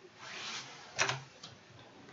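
Plastic parts of a Dyson V11 stick vacuum being handled: a brief scrape, then a sharp click about a second in and a lighter click soon after.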